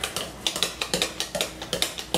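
Wire whisk clinking against the sides of a ceramic mixing bowl as pancake batter is stirred: a quick, irregular run of light clicks.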